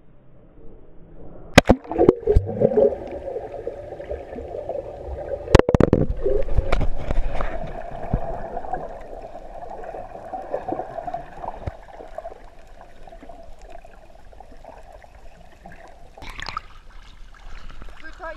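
Sharp knocks and splashes as a camera goes under the sea, then muffled underwater gurgling and sloshing that slowly fades. A short splash near the end as it breaks the surface.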